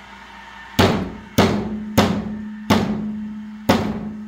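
Five sharp blows of a mallet on a board laid over plastic drums, crushing model buses and cars, about a second in and then every half second to a second.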